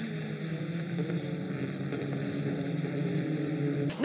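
Racing touring cars' turbocharged four-cylinder engines running on track, a steady engine note held at high revs.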